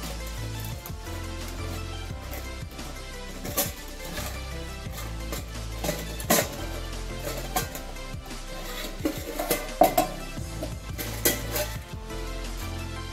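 Background music with a steady stepping bass line, over a few sharp clinks and knocks of AMG titanium cook pots being handled and lifted apart. The loudest clinks come in the last few seconds.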